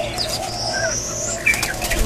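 Birds calling in an aviary: a thin high whistle rising steadily for about a second, over a run of low, repeated curving notes, with a few sharp clicks near the end.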